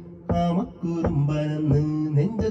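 A man singing a melody in long held notes that glide between pitches, over a backing track with a steady beat.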